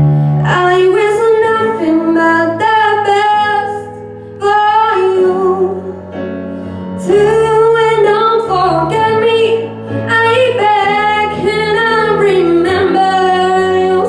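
A young woman singing a slow ballad through a handheld stage microphone, in phrases with short breaths between them, over a backing accompaniment of held chords.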